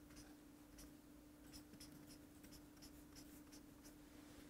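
Faint strokes of a felt-tip highlighter pen drawn across textbook paper, a quick run of short scratches, over a steady faint hum.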